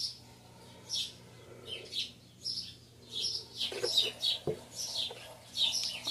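Small birds chirping: short, high chirps repeated every second or so, with a light knock about four and a half seconds in.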